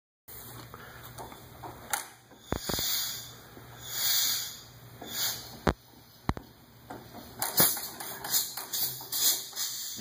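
Vintage tractor engine being started: a few sharp pops at irregular intervals with bursts of hissing in between, not settling into a steady run.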